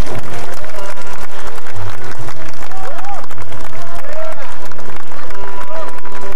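Upright double bass plucked, holding low notes, under audience applause and cheering.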